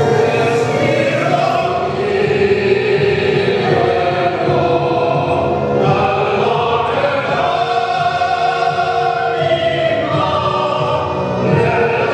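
Mixed choir singing long, sustained notes, with a female and a male soloist singing into microphones over them.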